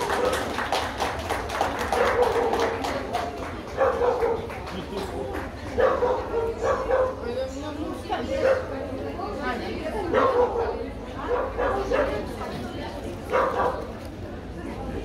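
A dog barking repeatedly, a short bark every second or two, over people talking in the background.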